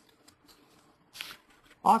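A short pause in spoken narration: faint room noise with a brief soft rustle about a second in, then a voice starts speaking again near the end.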